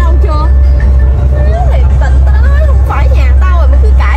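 A song with a wavering sung vocal plays over a steady, heavy low drone from the passenger boat's engine.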